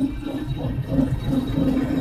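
Diesel engine of a YuMZ tractor running steadily while driving, heard from inside the cab as a low, even rumble.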